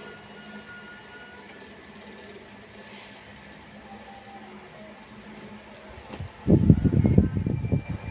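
Quiet room hum for most of it, then about six and a half seconds in a loud, rough rumbling rustle: black leggings being handled and laid down close to the phone's microphone.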